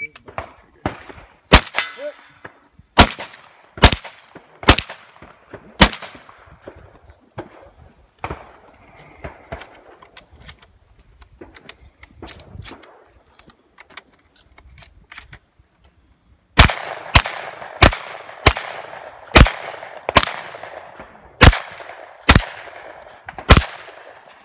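Shotgun shots in a rapid course of fire: about five shots in the first six seconds, a pause of about ten seconds with only faint clicks, then a faster string of about nine shots near the end.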